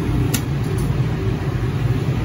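Steady low hum of a Stulz water-cooled commercial air-conditioning unit running, its compressor and fans still on, with a brief click about a third of a second in.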